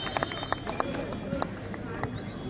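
Spectators talking and calling out at a football penalty shootout, with scattered sharp snaps at irregular intervals.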